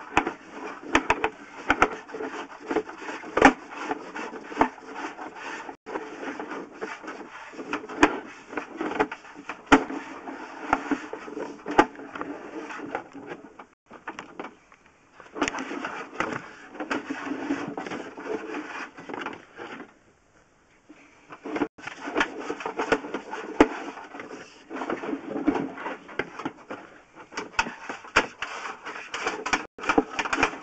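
Sewer inspection push camera and its push cable being fed down a sewer line: an irregular run of clicks, knocks and scraping as the camera moves along the pipe, with two brief pauses near the middle.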